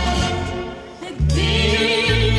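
A man and a woman singing a duet over amplified backing music. The music thins out briefly about half a second in, then comes back in full just after a second, with a heavy bass beat and held, wavering sung notes.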